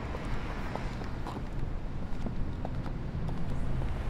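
City street background: a steady low rumble of traffic, with faint, irregular footsteps on a paved sidewalk.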